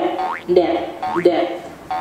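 Cartoon boing sound effect repeated about three times, a springy upward swoop roughly every two-thirds of a second.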